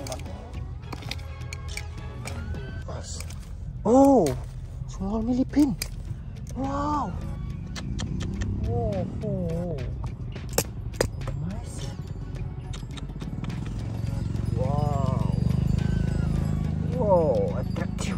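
A man's short wordless exclamations, several rising-and-falling 'oh' sounds, the loudest about four seconds in. They sit over a low rumble and scattered clicks of handling noise.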